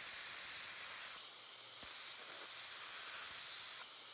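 A steady, low hiss with no words, with a slight dip in level a little over a second in and a faint click just before two seconds.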